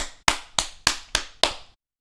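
A person clapping hands six times in an even rhythm, about three and a half claps a second.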